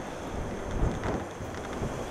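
Wind buffeting the microphone: an uneven low rumble that surges in gusts, strongest about a second in.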